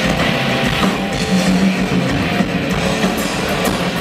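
Live hard-rock drum solo on a full drum kit, loud through a club PA, with dense cymbal and tom hits over a held low note.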